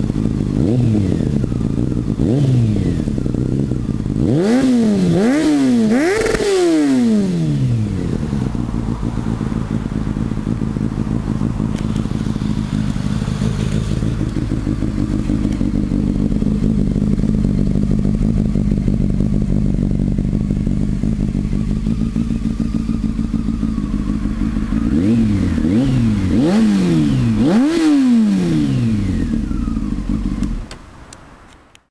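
2002 Honda Hornet 600's inline-four engine, breathing through a Danmoto GP Carbon aftermarket exhaust, idling and being blipped. A quick run of revs, each rising and falling straight back, comes in the first seven seconds or so. A long steady idle follows, then another run of short revs near the end.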